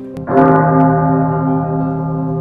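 A deep bell tone struck once about a third of a second in, ringing on with a slowly pulsing hum as it decays, over soft background music.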